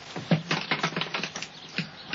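Irregular light clicks and taps, several a second, from hands working at a handicraft.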